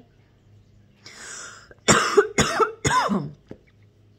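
A woman draws a breath in, then coughs three times in quick succession.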